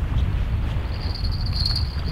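Wind rumbling on the microphone. From about a second in comes a steady, high, tinny jingle from a small bell clipped to a surf rod's tip: the bell shakes as a hooked fish pulls on the line.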